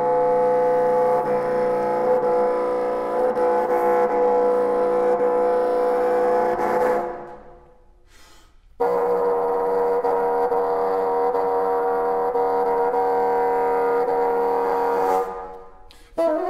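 Solo bassoon sustaining two long, steady notes. The first starts abruptly and fades away about seven seconds in. After a brief silence the second enters sharply about nine seconds in and fades out near the end.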